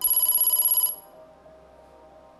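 Game-show letter-reveal sound effect: a rapidly pulsing electronic ring of high, bell-like tones, about twenty pulses a second. It lasts just under a second and stops abruptly as a letter is uncovered on the board.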